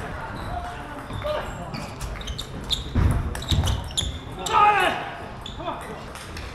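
Scattered sharp clicks of table tennis balls bouncing, echoing in a large hall. A voice speaks a few words about two-thirds of the way in.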